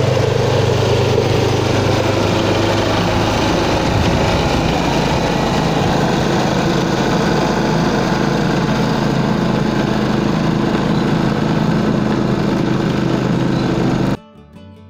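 Walk-behind snowblower's small gasoline engine running steadily while clearing snow, with the churning noise of the machine over it. The engine's hum changes pitch slightly about four seconds in.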